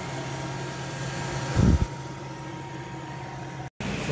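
A steady low hum of background machinery or ventilation, with one brief low thump about one and a half seconds in. The sound cuts out completely for a moment near the end.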